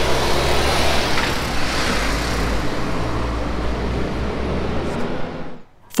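Steady city street traffic noise with a low rumble from passing vehicles, cutting off abruptly near the end.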